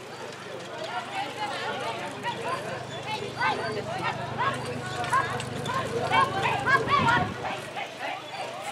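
Voices calling out repeatedly, busiest in the second half, over the hoofbeats of a pair of carriage horses trotting through a marathon driving obstacle, with a steady low hum underneath.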